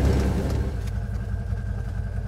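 Engine of a side-by-side utility vehicle running low and steady, easing down over the first second and settling to an idle. A faint steady high tone joins about a second in.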